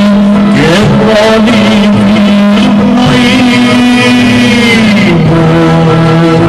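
A male singer holds one long note over a string orchestra, wavering slightly. About five seconds in it drops to a lower held note.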